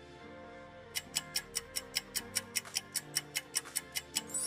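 Countdown-timer ticking sound effect: quick, even ticks about five a second, starting about a second in, over soft background music.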